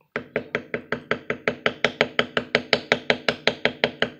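A small smooth triangle beveler struck with a mallet in rapid, even taps, about seven or eight strikes a second, on leather backed by a granite slab. This is the rapid fire beveling of a rope-pattern border.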